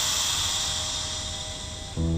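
A long breathy hiss of smoke being blown out through a thin bamboo tube, fading slowly: knockout smoke being puffed into a room.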